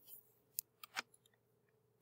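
A few faint computer mouse clicks, about four within the first second, over near silence.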